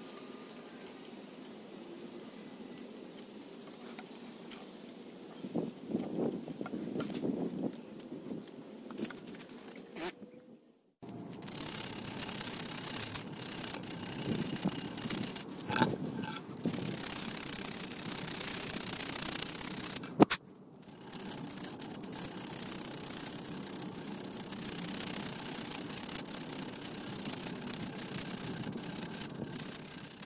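Knife blade scraping and shaving bark off a freshly cut wooden stick in short clusters of strokes, over steady background noise that cuts out abruptly twice.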